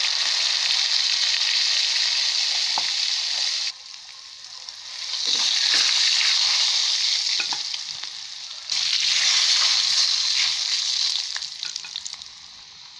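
Chopped ingredients sizzling in hot oil in a metal wok, stirred with a spoon. The sizzle drops away about a third of the way in, swells back, dips once more briefly and fades near the end.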